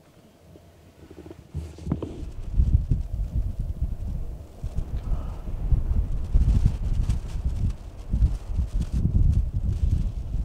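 Wind buffeting the microphone in an uneven, gusting low rumble that begins after a quiet first second or so. Two light knocks come about two seconds in.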